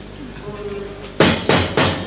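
Three loud bangs about a third of a second apart: a hand pounding on a steel serving counter to call for service.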